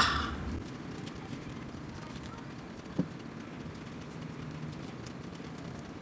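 Dried egg peel-off mask with tissue being peeled from the skin: faint, sparse crackling, with one sharp click about halfway through.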